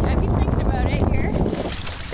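Wind rumbling on the microphone at a pebble shoreline, with small waves washing over the stones. The rumble eases near the end.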